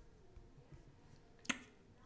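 A single sharp computer mouse click about one and a half seconds in, over faint room tone.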